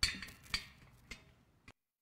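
Four light clinks and taps about half a second apart, the first the loudest, as communion ware is handled on the communion table.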